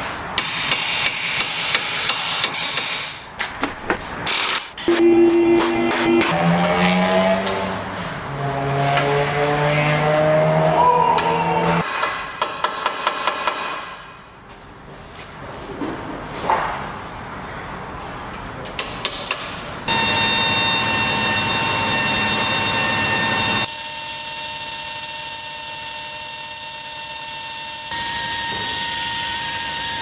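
Hand and power tools working on a car's front suspension: a quick run of sharp metal strikes at the start and again about twelve seconds in, a tool motor shifting and rising in pitch in between, and a steady high whine from a power tool through the last ten seconds.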